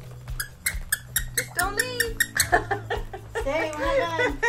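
A quick run of light, sharp clicks and clinks, several a second, for the first two seconds or so, followed by a soft voice.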